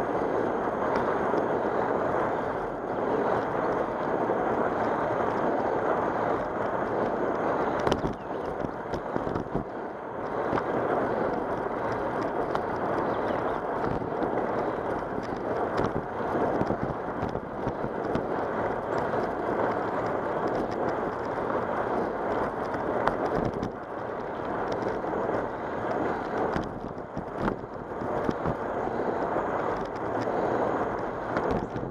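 Steady rushing wind noise on the microphone of a camera riding on a moving bicycle, with tyres rolling on asphalt. A few sharp knocks come through, the loudest about eight seconds in.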